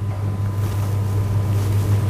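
Steady low electrical hum on the lecture recording, with a rustling, rubbing noise on the microphone building up from about half a second in.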